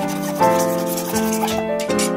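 Background music of sustained keyboard notes changing about every half second, over the faint back-and-forth rasp of a hacksaw cutting a threaded fitting.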